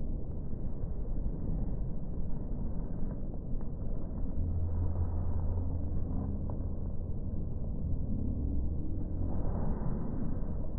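Low, muffled rumble with nothing clear above it, with a steadier low hum through the middle.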